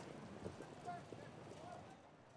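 Faint, irregular hoofbeats of harness horses moving on the racetrack, under a low steady hiss.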